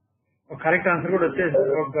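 A man speaking in narration, starting about half a second in after a brief pause.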